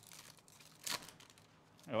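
Foil wrapper of a baseball card pack crinkling in the hands and tearing open, with one short, sharp rip about a second in.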